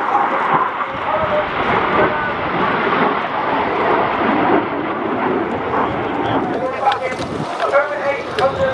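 Steady jet roar from BAE Hawk T1 display jets flying past in formation, with a voice heard over it near the end.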